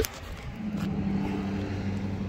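A motor vehicle's engine idling: a steady low hum that grows stronger about half a second in.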